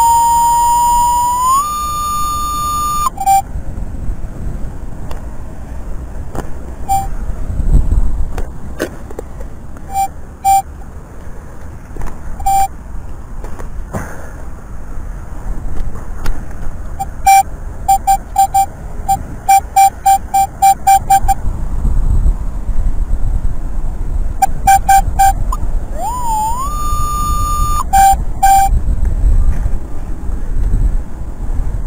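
Minelab Equinox 800 metal detector sounding a steady target tone, on a target reading a stable 18–20, that glides up and steps higher before stopping after about three seconds. Short beeps follow, in a quick run around the middle and again near the end, where there is another rising tone. Beneath them, a shovel digging in soil.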